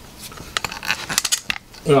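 Handling noise from a camera tripod being picked up and moved: a string of small clicks and knocks from its head and legs, with the word 'right' at the very end.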